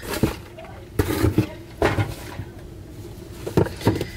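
Cardboard packaging being handled: a gift box is lifted out of a cardboard shipping carton and set down on a stone countertop. Several separate knocks and clicks, with a brief scrape about two seconds in.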